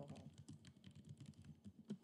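Faint typing on a computer keyboard: a quick run of key clicks, with one louder keystroke near the end.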